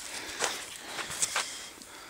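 Faint rustling and a few soft scuffs from the camera being handled and moved.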